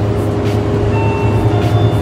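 Steady low mechanical hum of a refrigerated open display case, its cooling fans and compressor running.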